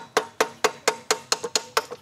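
Hammer tapping on the metal powerhead of a small Johnson outboard, about four even blows a second, each with a short ringing note, while the seized motor's cylinder head is being removed.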